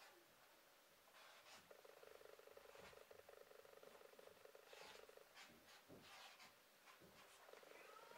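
Faint scratching strokes of a felt-tip marker writing on a sheet of paper, mixed with a low, rapidly pulsing buzz that comes in about two seconds in, stops past the middle and returns near the end.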